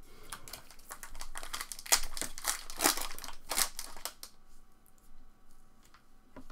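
Plastic trading-card pack wrapper (2020 Topps Stadium Club Chrome) crinkling as it is picked up from a stack and torn open, a run of sharp crackles that stops about four seconds in.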